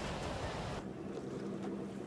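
Surf breaking over a capsizing rubber boat, with wind buffeting the microphone. The rush of water cuts off abruptly just under a second in, leaving only faint low steady tones.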